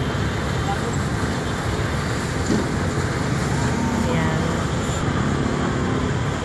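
Steady road traffic noise from a busy city street, with faint distant voices about four seconds in.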